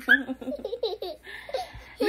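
A small girl laughing in short, broken bursts while being tickled.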